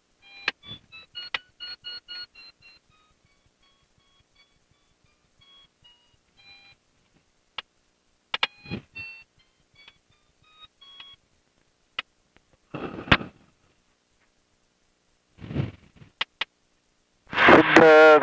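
Glider's electronic audio variometer beeping: short steady tones in quick succession whose pitch steps down over the first few seconds, then scattered groups of beeps at changing pitches, the tone tracking the glider's rate of climb. A few sharp clicks and two brief bursts of noise fall in between.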